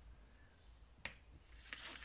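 Near silence, with one faint sharp click about a second in.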